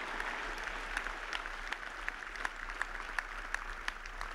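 Audience applauding: many hands clapping in a steady wash, softer than the speech around it.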